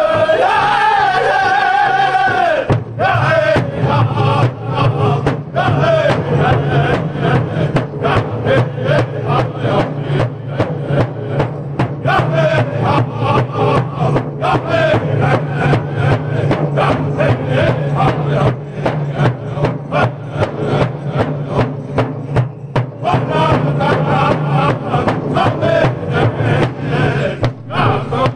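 Powwow drum group singing in high, strained voices over the steady unison beat of a large bass drum struck with padded sticks. The drumbeat grows strong about three seconds in and carries on evenly under the song.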